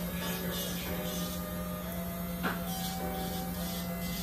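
Electric nail drill (e-file) running at a steady speed as its bit files a polygel nail, a constant motor hum, with one short tick about halfway.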